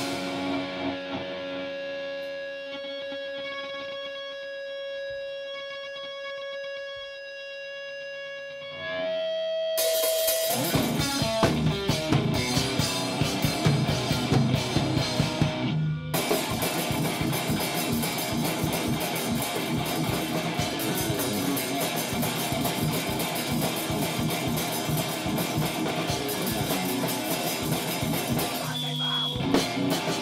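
Live guitar-and-drums duo playing loud rock on electric guitar and drum kit. A held electric guitar note rings alone for about nine seconds, then the drums and guitar come in together at full volume, with a brief stop a few seconds later and another short break near the end.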